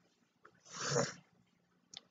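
A woman's single short sniff or sharp breath, about a second in, with no voice in it. It comes between emotional pauses while she holds her hand to her face.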